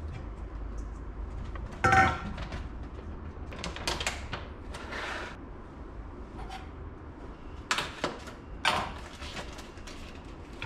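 Kitchen handling sounds: a loud clank with a short ring about two seconds in as a stainless steel mixing bowl is handled on the bench, then scattered lighter knocks and clatters of containers being moved and opened.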